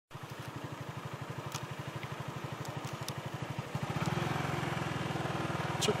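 Motorcycle engine running at low road speed, a steady low pulsing exhaust beat that grows a little louder from about four seconds in.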